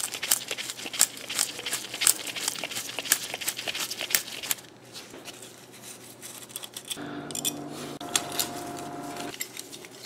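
Quick metallic clicks and scrapes of a Phillips screwdriver working the screw that holds a derailleur pulley, lasting about four and a half seconds, then quieter handling of the parts. A steady hum with a few tones comes in for about two seconds near the end.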